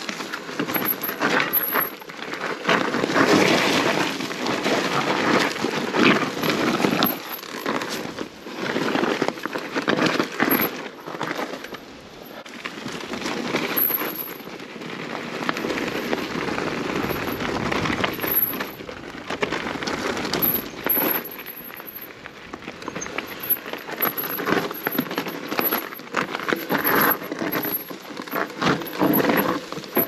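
Tyres of a Cube Stereo Hybrid 160 SL e-mountain bike rolling over loose gravel and stones: a continuous crunching with many small clicks and rattles from the bike, swelling and fading as the ground changes.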